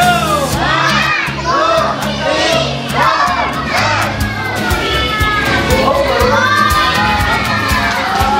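A crowd of children shouting and cheering, many high voices at once, over background music with a steady beat.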